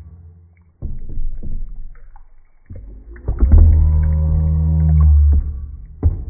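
Water sloshing and splashing as a toy is pushed around a tub, then a long low hum of about two seconds that fades out near the end.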